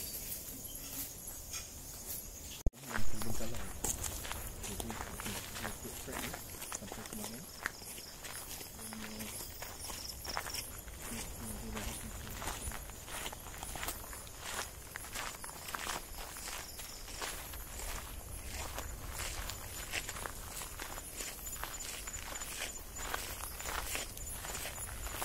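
Footsteps pushing through tall grass and undergrowth, one step after another in a steady walking rhythm. A thin, steady, high insect tone runs underneath. A sudden loud knock comes just under three seconds in.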